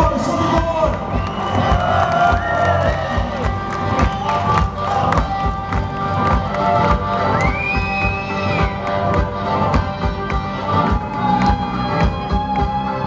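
Live blues band playing with harmonica and mandolin over a steady drumbeat, with the crowd cheering and shouting along.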